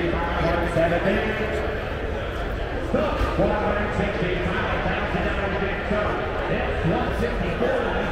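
Crowd chatter: many people talking at once, none of it clear, over a steady low hum.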